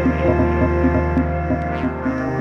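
Instrumental background music: a sustained low bass note under repeating plucked notes, about four a second.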